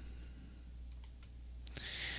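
Faint computer clicks, a few scattered taps, as a desktop computer is worked to switch browsers, over a low steady hum; a short soft hiss comes near the end.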